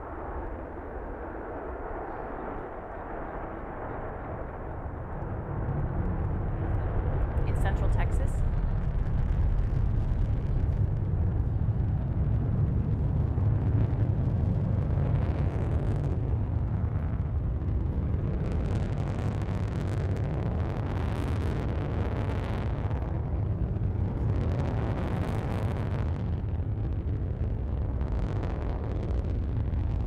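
Rocket engine firing on SpaceX's Grasshopper reusable test rocket during a vertical takeoff-and-landing flight, heard through a hall's loudspeakers. A low, steady rumble builds about five seconds in and holds.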